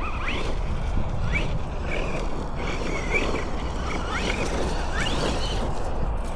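Wind rumbling on the microphone over a steady hiss, with a bird giving short rising chirps several times.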